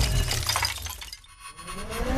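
Cartoon magic sound effect of crystal shattering and tinkling, with ringing tones, fading to a lull just past the middle; a rising sweep starts near the end as it builds again.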